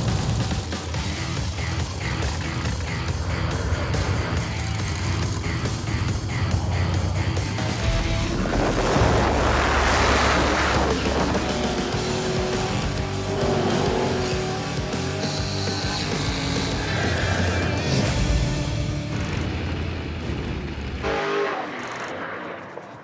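Street-race drag car engines running loud at the start line, swelling into a full-throttle run about eight to eleven seconds in and cutting off just before the end, under background music.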